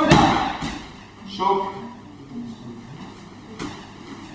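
A person thrown onto a padded training mat, landing at the very start with one loud thud as he breaks his fall.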